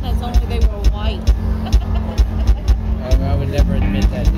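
Upbeat pop music played through the PA, with bass and drums keeping a steady beat and a choir of voices singing over it.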